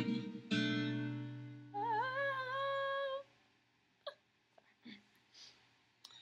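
Acoustic guitar chords struck twice near the start of a descending walk-down passage and left ringing. Then a woman hums one held note for about a second and a half, wavering as it starts. After that only a few faint clicks are heard.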